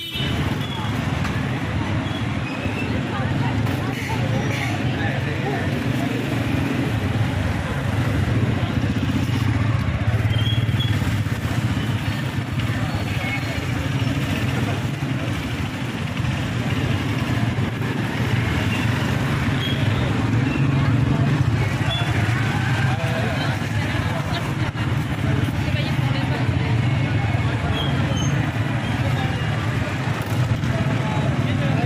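Busy market-street din: many people talking at once over motorcycle and car engines running and passing close by.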